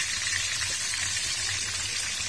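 Whole fish frying in hot oil in a steel pan over a wood fire: a steady, even sizzle.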